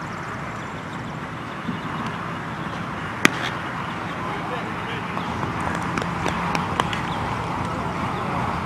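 A baseball pitch popping into the catcher's mitt about three seconds in, one sharp crack, over a steady murmur of voices from players and spectators around the field.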